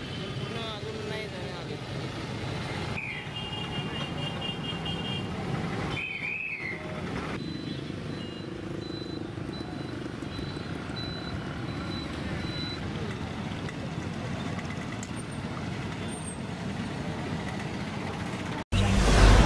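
Street traffic noise from autorickshaws, motorcycles and cars moving on a busy town road, with background voices. A few short high tones sound about three to seven seconds in, and a faint high beep repeats for several seconds in the middle.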